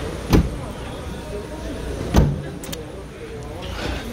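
Trunk lid of a Daewoo Nexia slammed shut twice, two loud thuds about two seconds apart, followed by a couple of small clicks.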